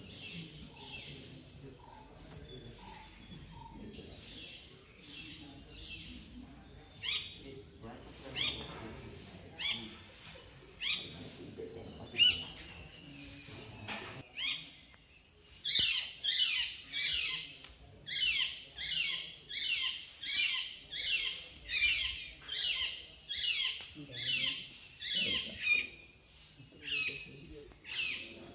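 A bird calling with a string of high, downward-sweeping notes, scattered at first and then repeating regularly about three every two seconds through the second half.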